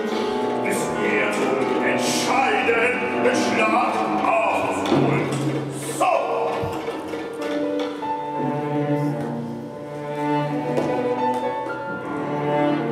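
Contemporary chamber ensemble of clarinet, percussion, piano, violin and cello playing. Sharp percussion strikes mark the first half, and the second half settles into long held string notes.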